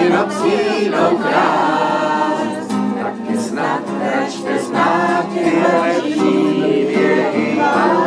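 Several voices singing a song together, steady and continuous.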